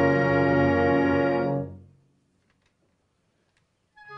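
A wind band holding a loud sustained chord under a conductor, cut off about one and a half seconds in. Near silence follows for about two seconds, then the band comes in again on a full chord at the very end.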